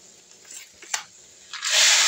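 Dry rice poured from a bag into a pan of sautéed vegetables: a rush of grains hitting the pan begins about a second and a half in, after a couple of faint clicks.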